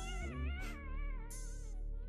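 Background music: a wavering, vibrato melody over steady sustained low notes, with short hissy percussion strokes repeating about once a second.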